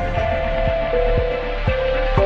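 Electronic music with a steady beat, about two beats a second, under held synthesizer notes that change pitch.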